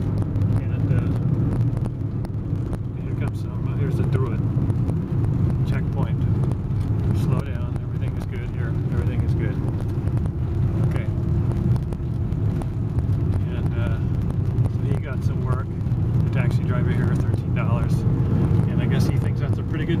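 Steady engine and road rumble heard from inside a moving car's cabin, with voices talking now and then over it.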